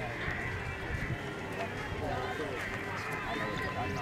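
Indistinct chatter of several people's voices, overlapping and steady.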